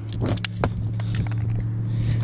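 A man climbing down off the back of a trailered boat: a few sharp clicks and knocks of feet and hands on the hull and trailer, with handling noise on the camera, over a steady low hum.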